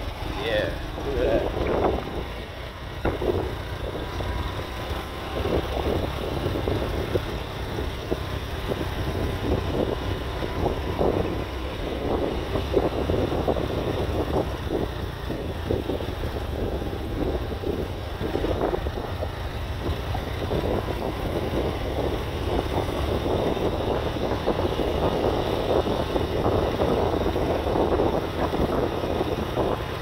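Wind buffeting a phone microphone on a moving motorbike, in uneven gusts over the low rumble of the motorbike running along the road.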